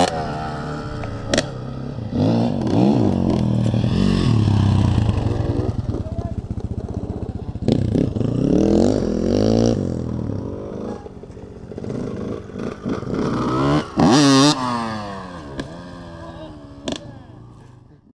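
Dirt bike engines revving up and down as riders accelerate across the track, loudest in a sharp rising rev about 14 seconds in, then fading.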